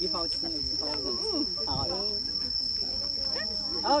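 Insects droning in the forest: one steady, high-pitched, unbroken tone, heard under people talking, with a laugh near the end.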